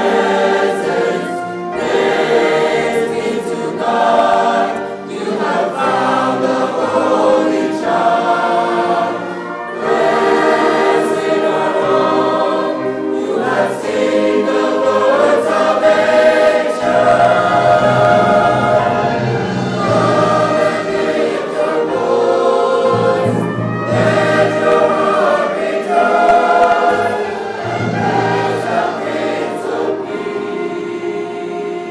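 A large mixed choir sings phrases of long held notes, accompanied by a string orchestra. The low voices and instruments grow fuller about halfway through.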